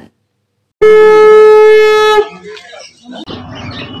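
A conch shell (shankha) blown in one steady held note. It starts suddenly a little under a second in and lasts about a second and a half, followed by fainter background noise.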